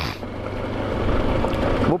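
Wind and road noise from a motorcycle riding on a gravel road: an even rush of wind on the helmet microphone mixed with tyre noise from the gravel, slowly growing louder.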